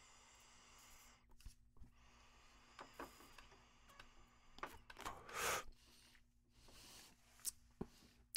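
Faint drawing of air through a Crafty+ portable vaporizer, with a short, louder breath out about five seconds in and a few small ticks; otherwise near silence.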